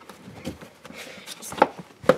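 Light rustling and a few short knocks from a vehicle seat belt being pulled tight through a car seat's belt path while the seat is pressed down into the vehicle seat.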